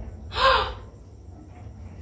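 A woman's short gasp of surprise, about half a second in.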